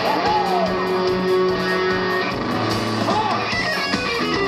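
Rock band playing live: strummed electric guitar over a steady drum beat, with two short notes bending up and back down.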